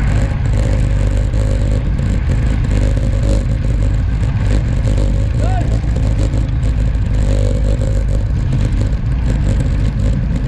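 Wind buffeting a bike-mounted action camera's microphone at sprint speed on a racing bike: a loud, steady rumble.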